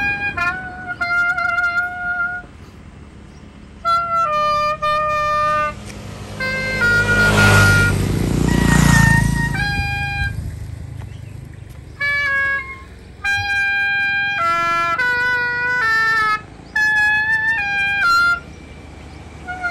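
A solo woodwind playing a slow melody of held notes, phrase by phrase with short breaks. About seven seconds in, a passing vehicle's noise and low rumble swell up and fade away over a couple of seconds.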